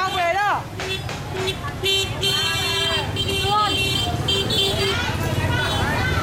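Street noise from motorbike traffic: engines running, people talking, and a horn honking for just under a second about two seconds in.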